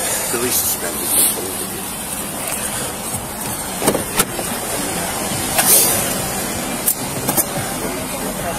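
Steady outdoor background noise with short rustling and brushing sounds scattered through it, from a body-worn camera's microphone rubbing against clothing and surfaces as the wearer moves.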